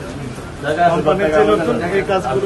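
Speech only: men's voices talking among a crowd, quieter for the first half second and then louder.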